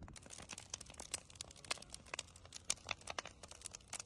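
A heap of freshly cut green cannabis plants burning, crackling with dense, irregular snaps and pops.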